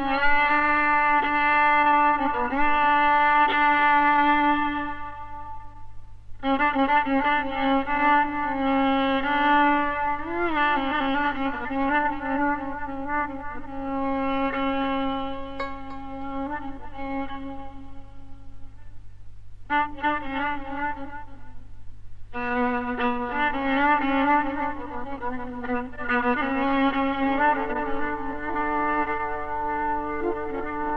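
Solo violin playing a slow, ornamented Persian classical improvisation in dastgah Homayun, long sustained bowed notes with sliding pitch, in phrases broken by brief pauses. A steady low hum from the old recording runs underneath.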